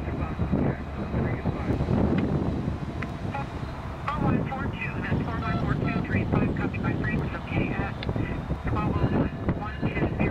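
Norfolk Southern SD60E diesel locomotive moving slowly with a steady low engine rumble. Short high-pitched tones come and go over it through the middle of the stretch.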